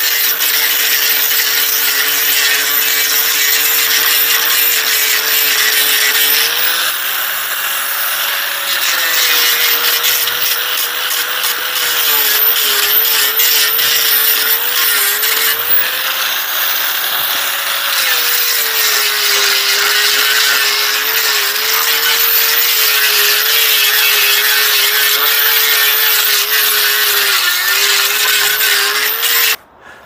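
Hyper Tough angle grinder with a 36-grit flat sanding disc on a backing pad, running steadily while it sands bark off a bone-dry arbutus stick: a motor whine over a scratchy grinding noise. The whine dips in pitch when the disc is pressed into the wood and rises again when it eases off. It cuts off suddenly near the end.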